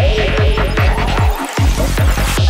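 Psychedelic forest-trance music playing: a pulsing kick and bass at about four pulses a second with a wavering synth line on top and the high percussion pulled back. The bass drops out briefly about a second and a half in, then comes back.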